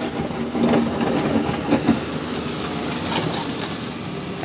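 Wheeled excavator's diesel engine running as its bucket digs into rocky ground, a steady mechanical rumble with more hiss from about three seconds in.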